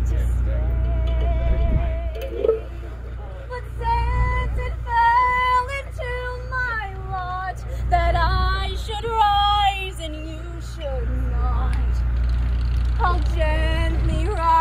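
A woman singing a slow melody solo, with long held notes, over a steady low rumble.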